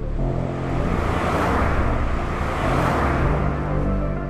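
A car's engine and road noise swell and ease as it drives past, over background music with sustained low notes.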